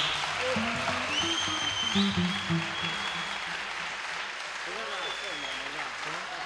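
Concert audience applauding after a song, with a few long whistles and some voices over the clapping.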